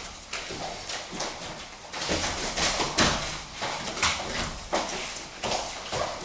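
Bare feet thudding and scuffing on foam grappling mats as two wrestlers grip-fight and shift their stance, with irregular thuds, the loudest about halfway through.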